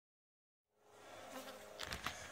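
Faint, steady buzzing of honey bees. It fades in after about half a second and grows a little louder, with a couple of sharp handling knocks near the end.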